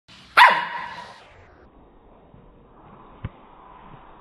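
An Indian Spitz barks once, a single sharp bark about half a second in that rings on briefly after it.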